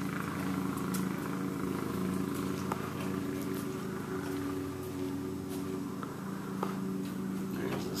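A steady, low mechanical hum with a few faint taps scattered through it.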